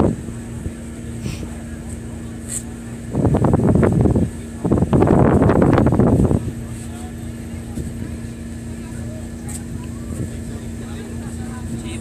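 An engine running steadily, with two loud rushing bursts about three and five seconds in.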